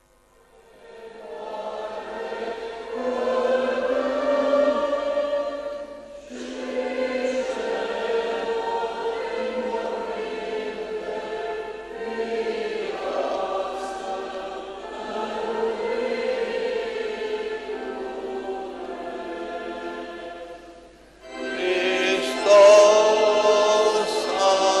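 Church choir singing a liturgical chant in several phrases, with short breaks about six seconds in and near twenty-one seconds, and a louder passage from about twenty-two seconds.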